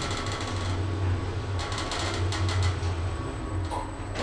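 Schindler 2400 machine-room-less traction lift car travelling between floors: a steady low hum with light clicking and rattling of the car.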